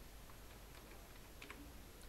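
A few faint computer keyboard keystrokes as a short command is typed, over quiet room hiss.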